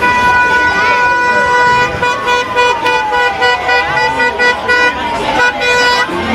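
A vehicle horn sounding one steady pitched tone, held long in the first two seconds and then broken into short toots, over crowd voices.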